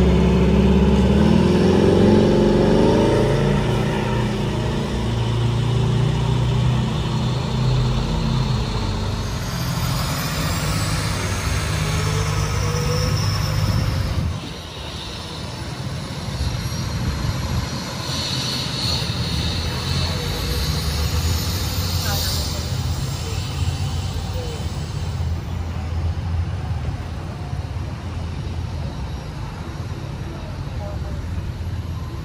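Idling fire apparatus engines: a steady low rumble, with indistinct voices. The rumble drops in level about halfway through.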